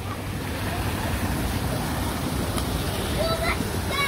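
Steady rush of running water from an artificial stream flowing down a shallow rocky channel and spilling onto a metal drain grate.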